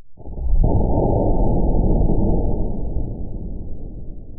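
An airbag module firing its pyrotechnic inflator, slowed down by slow-motion playback into a long, deep rumbling boom. It builds up about half a second in and slowly fades.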